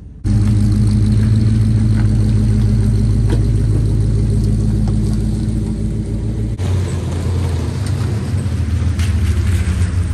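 A pickup truck's engine running close by as the truck drives slowly past. The sound cuts in suddenly just after the start, and its pitch shifts about two-thirds of the way through.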